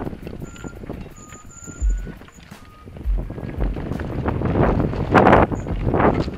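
Mountain bike riding noise on a dirt singletrack: tyres rolling and rattling over the rough trail, with wind buffeting the microphone. It grows louder to a loud rough burst about five seconds in.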